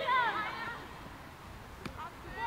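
High-pitched women's voices shouting calls across an open rugby pitch in the first second. After that it is quieter, with one short click near the end.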